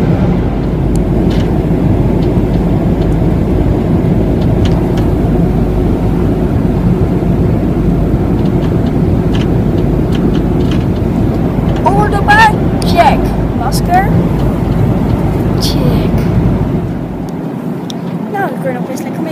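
Airliner cabin noise: a loud, steady low rumble that cuts off abruptly near the end. Brief voice sounds come about two thirds of the way through.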